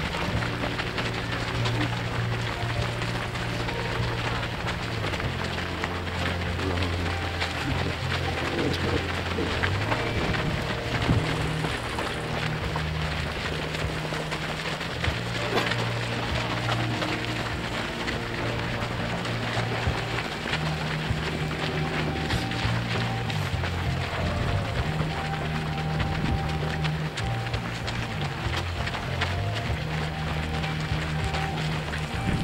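Music with long held low notes that change every few seconds, over the dense, steady patter of many runners' footsteps on a dirt path.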